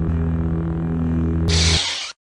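Logo-intro sound effect: a steady, low droning hum carried on from an opening hit, with a short whoosh about one and a half seconds in that cuts off abruptly.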